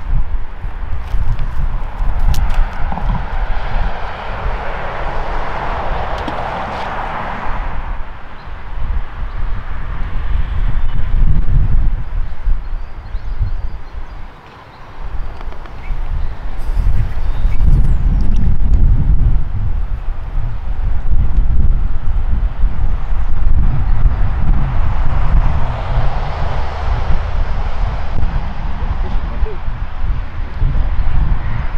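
Wind buffeting the microphone in gusts, a deep rumble that drops away briefly about halfway through. Over it, road traffic passing close by swells and fades twice, once early and once near the end.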